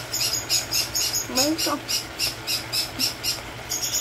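Pet parrot chirping over and over: short high chirps, about four a second, over a low steady hum. A brief low voice-like tone comes about a second and a half in.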